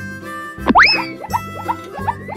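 Cheerful children's background music with a cartoon sound effect: a quick swoop that rises and then falls a little under a second in, followed by a few short falling blips, with another swoop beginning near the end.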